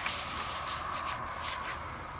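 Soft handling noises: a few faint rustles and light taps as a sheet of paper is set down on carpet, over a faint steady high-pitched hum.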